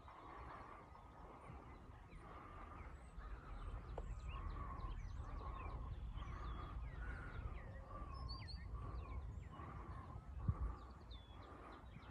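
Several birds calling in the background, a steady string of short repeated notes with higher chirps between them, over a low rumble on the microphone. A single brief thump comes about ten and a half seconds in.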